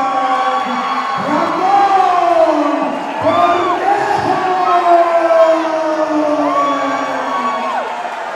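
Arena crowd cheering and shouting for the winner of an MMA bout as his hand is raised, with many voices calling out over one another, some rising and falling in pitch.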